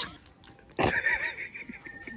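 A person's short, high-pitched squeal about a second in, amid joking and laughter.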